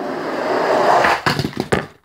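Two toy monster trucks running down a track ramp: a rolling rumble of their wheels that builds for about a second, then a few sharp clacks and knocks as they reach the bottom and hit the floor.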